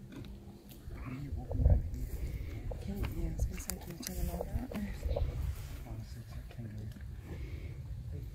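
Faint, indistinct murmured voices over a steady low rumble, with a few scattered clicks.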